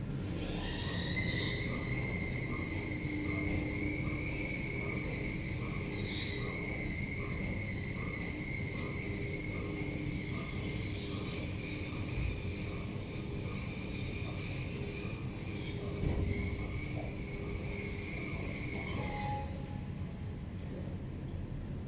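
Kone-modernised EPL traction elevator travelling down: the drive's high whine rises in pitch as the car speeds up, holds steady over a low running rumble, then falls away as the car slows to stop. A short electronic beep sounds just before the end, the arrival chime.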